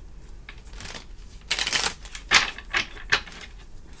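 A tarot deck being shuffled by hand: a run of quick card slaps and riffles starting about a second and a half in, with several sharp snaps of the cards.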